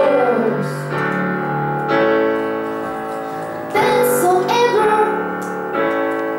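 Two girls singing a pop song through microphones over sustained piano chords. A held sung note slides down at the start, and the voices come back in about four seconds in after a short pause in the singing.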